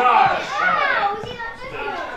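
People's voices talking and calling out, with no clear words; lively, overlapping chatter.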